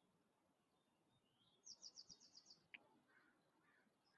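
Near silence broken by a faint small bird: a quick high trill of about eight notes in the middle, then one short sharp chirp.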